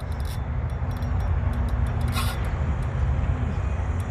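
Steady low wind rumble on the microphone, with two short rasping bursts from a spinning reel's drag giving line to a large hooked fish: one at the start and one about two seconds in.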